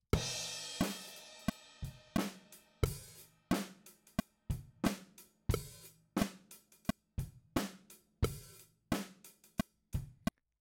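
Playback of a live-recorded drum kit with bass: it opens on a cymbal crash and settles into a steady beat of about 88 beats a minute, with kick and snare alternating and hi-hats between. A few of the kick and snare hits fall slightly off the beat, and one snare is late.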